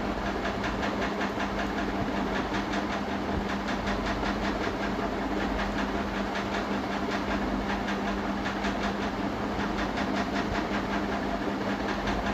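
A steady mechanical hum with a fast, even ticking running through it.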